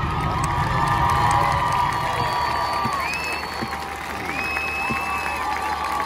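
Stadium crowd cheering and applauding as a marching band's field show ends, with several long, held shouts over the clapping.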